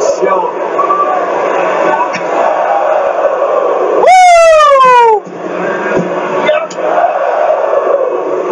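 A man's loud falsetto 'whooo' exclamation, about a second long, that jumps up and then slides down in pitch about four seconds in. Under it, arena crowd noise and commentary from the wrestling broadcast play throughout.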